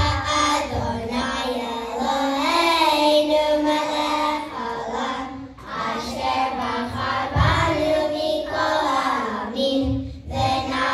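A group of young children singing together in unison, with a short break about five and a half seconds in.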